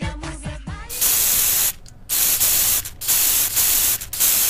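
Dance music with singing cuts off about a second in. It gives way to an aerosol spray-paint can sound effect: four loud hisses, each half a second to a second long, with short gaps between.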